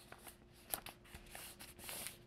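Faint rustling and a few soft clicks of stiff brown paper being folded in half and smoothed flat by hand.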